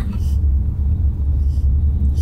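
Steady low road rumble inside the cabin of a moving passenger van.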